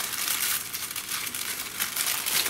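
Thin patterned paper crinkling and rustling as hands unfold a folded sheet, a continuous crackle throughout.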